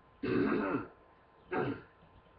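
A person giving two throaty coughs, like hard throat-clearing: a longer one just after the start and a shorter one about a second later.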